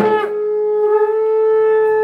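A conch shell (shankha) blown in one long, steady note.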